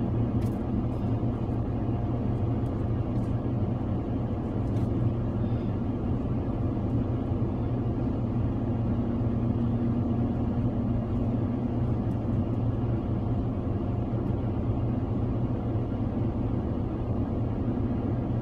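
Steady low hum and rumble of a car idling, heard from inside the cabin, with a few faint ticks.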